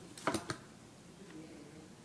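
A ruler being set down and positioned on paper on a tabletop: two sharp clicks close together near the start, then faint room noise.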